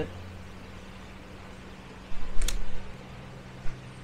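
Handling noise with one sharp click about halfway through, as thin 26-gauge antenna wire is cut and worked by hand for splicing, over a steady low hum.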